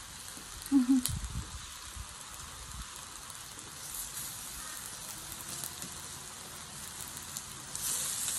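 Pork belly sizzling on a hot mookata dome grill: a steady fizzing hiss, with a few light clicks of chopsticks against the grill. The sizzle grows louder just before the end.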